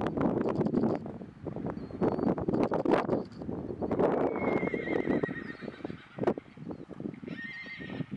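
A horse whinnying: loud rough calls in the first few seconds, then a long wavering high call about four seconds in and a shorter one near the end. Hoofbeats of a trotting horse on arena sand run underneath.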